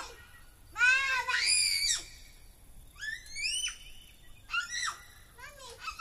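Young children squealing and shrieking in short, very high-pitched bursts, about four in all, the loudest and longest about a second in.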